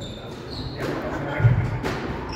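Squash ball impacts during a rally: a deep thud about one and a half seconds in, then a sharp crack just after, with short high shoe squeaks on the wooden court floor.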